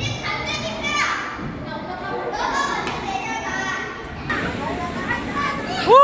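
Many children's voices and play noise in a busy indoor play area, with a child's loud rising squeal right at the end.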